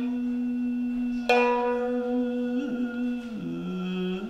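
Shamisen accompaniment to Japanese traditional song: a man holds one long sung note, which dips lower near the end and returns. About a second in, a single shamisen pluck rings and fades beneath it.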